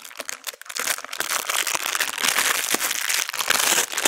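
Plastic packaging of a prefilled saline flush syringe being opened and handled by gloved hands: a dense crackling rustle with small clicks, louder from about a second in.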